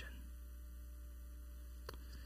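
Faint steady low electrical hum, like mains hum in a sound system, with one short click near the end.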